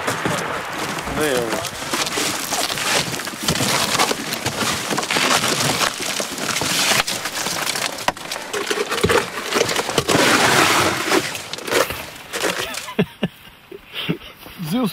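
Ice crunching and cracking in a dense, irregular crackle, as from chunks of ice in the bottom of a canoe. A brief indistinct voice sounds about a second in, and the crackle falls away near the end.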